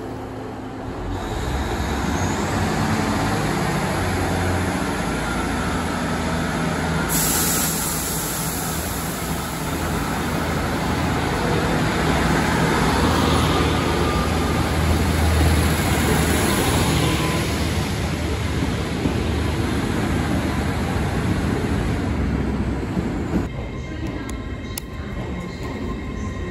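Class 150 diesel multiple unit moving along the platform close by: its underfloor diesel engines rumble low, mixed with wheel-on-rail noise, growing louder about two seconds in. Near the end the sound cuts abruptly to quieter station background.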